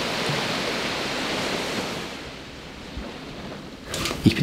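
Small sea waves washing onto a sandy beach: a steady rush of surf that swells and then fades away over the last couple of seconds.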